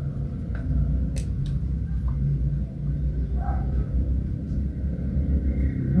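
A steady low rumble, with a couple of faint clicks about a second in.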